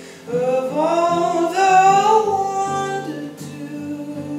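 A man singing a rising, held phrase over a strummed acoustic guitar; the voice comes in just after the start and drops out near the end, leaving the guitar alone.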